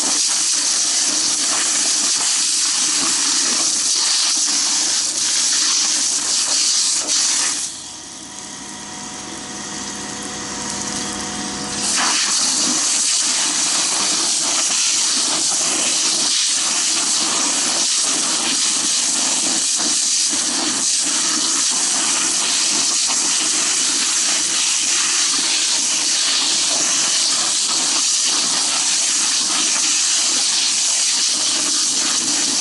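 Fire hose nozzle spraying water, a loud steady hiss. The flow is shut off for about four seconds around eight seconds in, then opened again.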